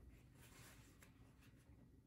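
Near silence: room tone with a few faint soft rustles and two light clicks.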